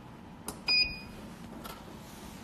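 A click, then a short electronic beep from a UV/LED nail lamp as its 30-second curing timer is started.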